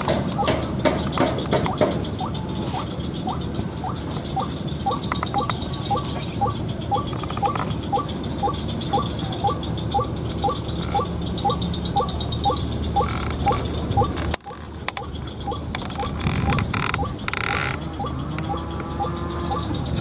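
White-breasted waterhen call played from an audio caller set beneath a decoy: a monotonous run of short notes, about two a second, which stops about two-thirds of the way through.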